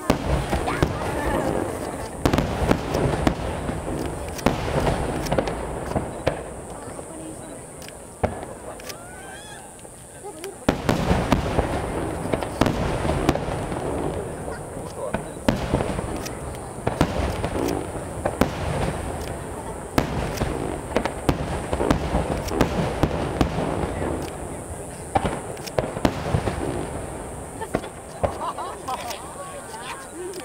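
Aerial firework shells bursting in rapid, overlapping succession. The bursts ease off for a couple of seconds, then a dense barrage starts again about ten seconds in.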